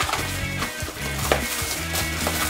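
Background music with a steady bass line, over which a cardboard toy box is handled and its clear plastic wrap crinkles and tears, with a few sharp handling noises.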